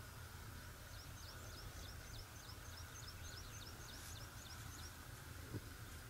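A small songbird singing a fast run of short, high, downward-sliding notes, about four or five a second, over faint steady outdoor background noise. A single brief bump comes near the end.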